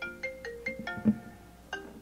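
Mobile phone ringing with a marimba-style ringtone, a quick repeating run of short struck notes. A single low thump, the loudest sound, comes about halfway through.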